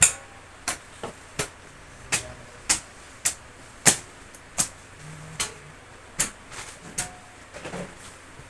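Plastic snack packets being handled and snapped, a sharp crinkling crackle about every half second to second, a dozen times or so.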